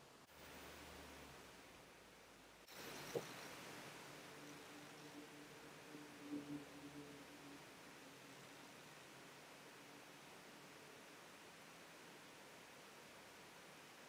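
Near silence: faint room hiss, with one small click about three seconds in.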